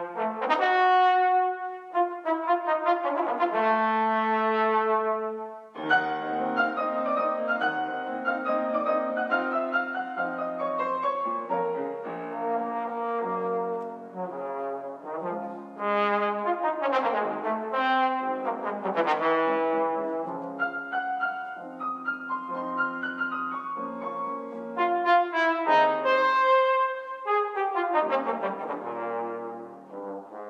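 A brass instrument plays a solo line with piano accompaniment. There is a brief break about six seconds in, and quick runs sweep up and down in pitch later on.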